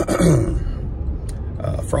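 A man clearing his throat once, a short rough sound falling in pitch, his throat hoarse from flu drainage, then starting to speak near the end. A steady low road rumble from the moving car runs underneath.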